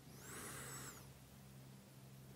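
Near silence: faint room tone with a low steady hum, and a soft hiss in the first second.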